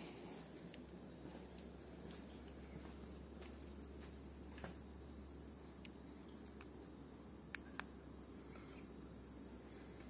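Faint steady chirring of crickets, with two quick clicks about three-quarters of the way through from the flashlight's push-button switch.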